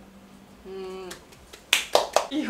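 The last strummed chord of a Morris W-30 acoustic guitar ringing out and fading away, followed near the end by a few sharp hand claps.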